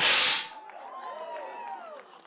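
A confetti cannon fires: a sudden loud blast of rushing noise that lasts about half a second and fades, followed by voices whooping and cheering.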